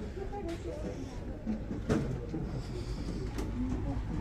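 Other passengers talking in the background over a low steady hum, with a short knock about two seconds in.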